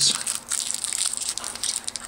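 Clear cellophane candy wrapper crinkling as fingers twist a roll of Rockets candies out of it, a quick irregular run of small crackles.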